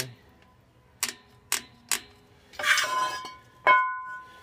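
Metal brake parts and tools being handled: three sharp metallic clicks about half a second apart, a short scrape with a metallic ring, then a louder metal clank near the end that rings on briefly.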